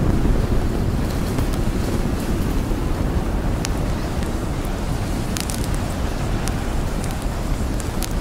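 Steady low rumbling noise like wind buffeting a microphone, with a few faint scattered clicks.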